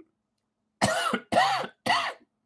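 A man coughing three times in quick succession into his fist, each cough short and sharp.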